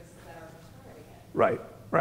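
Faint, distant voice of an audience member speaking off-microphone. About a second and a half in, a man gives a short, loud vocal sound close to the microphone.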